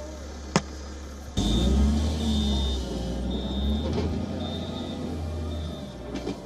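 A heavy vehicle's diesel engine rumbling, with a reversing alarm beeping about once a second. It cuts in suddenly about a second and a half in and stops shortly before the end, after a quieter steady hum with a single click.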